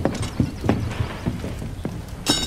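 Footsteps on a wooden floor: hard-soled shoes knocking unevenly, about three steps a second.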